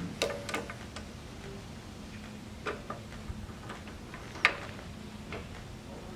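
Steel dies of a planishing hammer being handled and fitted: irregular metallic clicks and clinks, the sharpest about four and a half seconds in, over a steady low hum.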